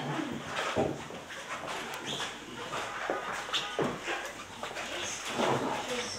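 Room noise in a meeting hall: indistinct voices and a few scattered knocks and shuffles.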